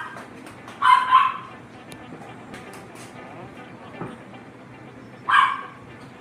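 An animal calling twice in short, loud bursts, once about a second in and once near the end.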